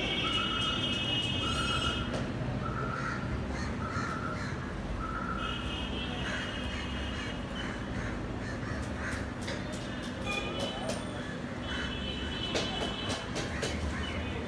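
Birds calling over steady background street noise: a run of short calls, evenly spaced about every two thirds of a second, for the first five seconds or so, with higher calls coming and going.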